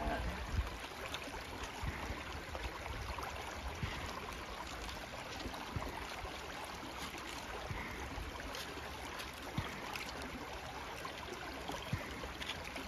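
Shallow creek water running steadily over rocks, with a few faint knocks.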